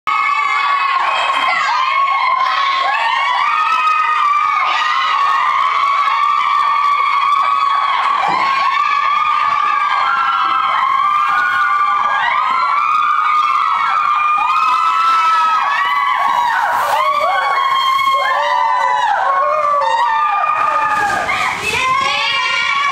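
A crowd of teenagers shouting and cheering together, many high voices overlapping without a break.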